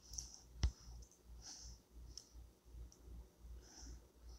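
Quiet room tone with one sharp click about half a second in and a few softer ticks after it.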